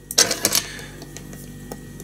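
Small fly-tying scissors snipping off the excess feather at the vise: a quick run of sharp snips and clicks lasting about half a second.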